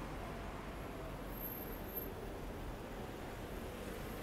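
Faint, steady hum of city traffic, with cars driving past along a busy boulevard.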